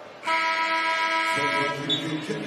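Arena horn sounding one steady, buzzy tone for about a second and a half, starting and stopping abruptly. It signals a substitution during a stoppage in play.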